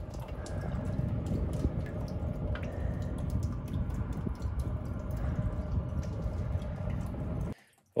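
Drain water running and trickling inside a buried sheet-metal heating duct, a steady watery noise: sink and dishwasher waste water that has leaked into the ductwork. It cuts off suddenly near the end.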